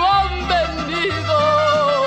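A woman singing a Mexican ranchera song with band accompaniment, ending a line on a long held note with vibrato over a moving bass line.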